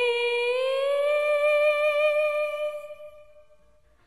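An unaccompanied woman's voice holds one long sung note with vibrato, slides up a step about half a second in, and fades away near the end.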